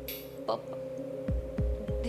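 Dramatic background music: a sustained droning chord under slow, low heartbeat-like thuds, with a brief swish at the start.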